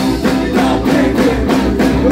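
Live rock band playing: electric guitar, bass guitar and drums, with a steady drum beat of about four strokes a second.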